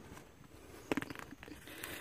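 Mostly faint background, with one light tap about a second in: a recovered, deformed pistol bullet set down on cardboard.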